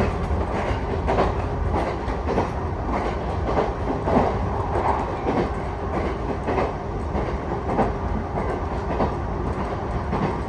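Passenger train running at speed, heard from inside the carriage: a steady low rumble with a clickety-clack of wheels knocking over rail joints, roughly every half-second or so.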